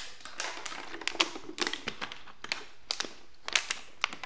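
Irregular light clicks and taps from handling things at a desk, a few each second, some in quick pairs.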